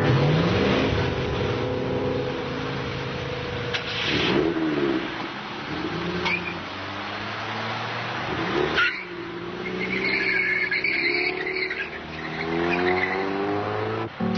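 Car engines accelerating through the gears, the engine note climbing several times as the cars pull away. A higher wavering sound comes in about ten seconds in.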